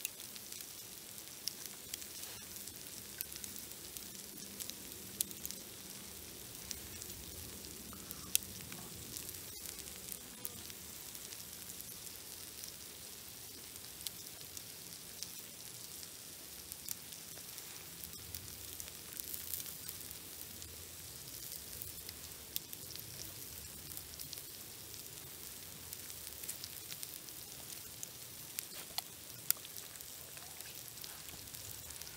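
Faint, steady crackling hiss with scattered sharp clicks at irregular intervals.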